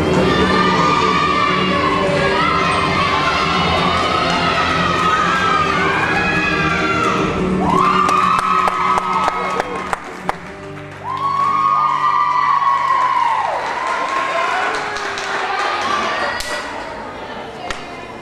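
Young voices in a crowd cheering and calling out, with two long drawn-out shouts in the middle, over music and a few sharp knocks.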